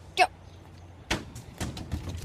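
A run of thuds and knocks starting about a second in, the first the loudest: a basketball thrown down a playground slide and the phone being jostled as the boy runs after it.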